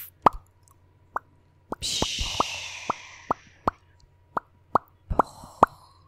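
Close-miked mouth sounds imitating fireworks: a run of about fifteen sharp mouth pops at an uneven pace. About two seconds in, a hissing sound starts and fades away over the next two seconds while the pops go on.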